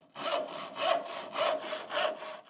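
Hand saw cutting through wood in steady back-and-forth strokes, just under two strokes a second.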